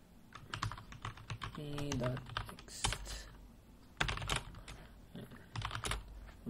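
Computer keyboard typing: keystroke clicks in several short bursts with brief pauses between them, as commands are entered at a command prompt.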